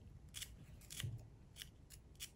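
Thin-bladed carving knife cutting into crisp raw turnip flesh: faint, short crisp snicks, about five in two seconds, as petals are carved.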